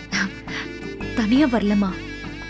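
A woman's voice with a wavering pitch, loudest a little past a second in, over steady background music.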